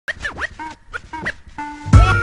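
Hip hop intro of DJ turntable scratching: a record pushed back and forth in quick rising and falling sweeps, several times. A held chord comes in near the end, with a heavy bass hit right at the close.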